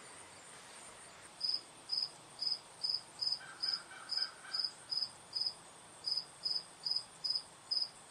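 An insect chirping in the background: short high chirps at one steady pitch, about two a second, starting about a second and a half in.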